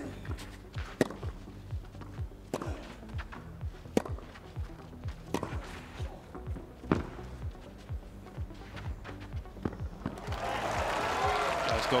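Tennis rally on a clay court: six or so racket-on-ball strikes, one about every second and a half, over background music with a steady low beat. Applause breaks out near the end as the point is won.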